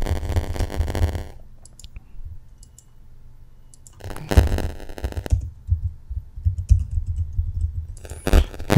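Computer keyboard typing in two short bursts, one right at the start and another about four seconds in, with a few fainter clicks between and after.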